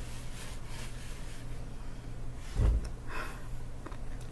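Faint rustling, then a low thump a little past halfway, followed by a short breathy sound from a person, like a snort.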